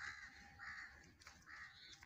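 Crow cawing, faint, about three short calls.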